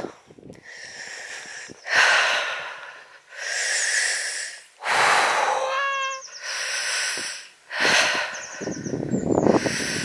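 A person breathing heavily and wheezily while walking uphill, one long noisy breath about every second and a half. Small birds chirp now and then between the breaths.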